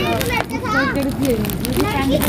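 Children talking, their high voices rising and falling with several voices at once.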